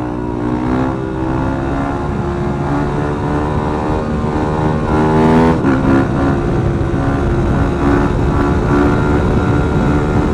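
Yamaha supermoto's engine pulling steadily in a wheelie, its pitch climbing slowly, dropping at a gear change about five and a half seconds in, then climbing again, with wind rushing over the helmet microphone.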